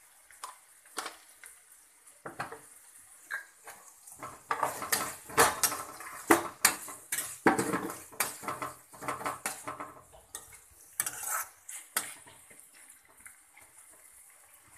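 Steel spoon scraping and knocking against a non-stick pan while stirring chopped onion and tomato frying in oil. The strokes come in a busy run through the middle, with only scattered knocks at the start and end.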